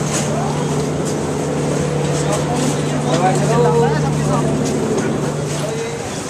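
Busy market street: a steady low engine hum runs on and then cuts off suddenly just before the end, among the chatter of passing people's voices and small clicks and knocks of street traffic.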